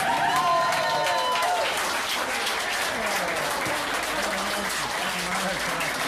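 Pub audience clapping and cheering at the end of an unaccompanied folk song. A voice holds a long note that falls away in the first second or so as the clapping carries on.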